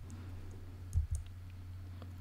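Two soft clicks about a second in, from a computer mouse advancing a presentation slide, over a steady low electrical hum.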